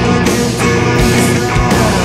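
Loud stoner rock band playing: heavy distorted guitars and bass over a steady drum beat, dense and sustained.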